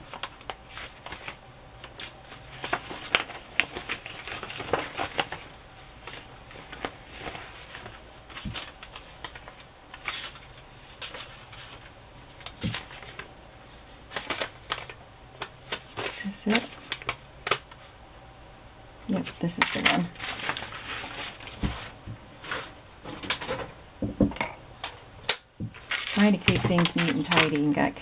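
Sheets of paper and vellum being handled and leafed through on a cutting mat: crisp rustles, flaps and light taps coming in irregular bursts.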